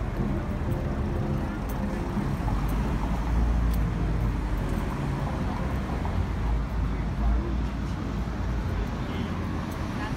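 Street ambience: road traffic with a steady low rumble, and indistinct chatter from people standing along the sidewalk.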